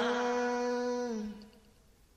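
A voice chanting Vietnamese Buddhist scripture verses holds the last note of a line at a steady pitch, then lets it dip slightly and fade out about one and a half seconds in, leaving a pause.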